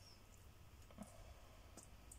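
Near silence with two faint clicks, about a second in and near the end, from a metal fork tapping as filling is pressed onto rolled slices.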